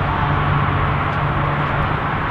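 Steady outdoor background noise: an even hiss with a constant low hum under it, from parking-lot vehicles.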